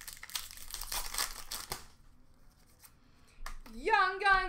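A foil trading-card pack being torn open and its wrapper crinkling for about two seconds, followed by a few faint clicks of the cards being handled.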